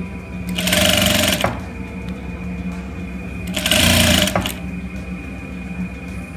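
Sewing machine running in two short bursts of stitching, each about a second long, as fabric is fed under the presser foot.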